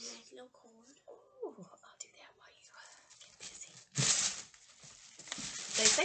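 Soft, murmured speech, then two short, loud rustles of wrapping being handled as packed items are unwrapped, one about four seconds in and one near the end.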